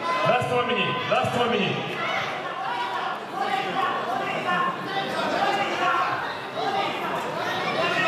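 Spectators at a cage-side MMA fight shouting and calling out over one another, several voices at once, with no single speaker standing out.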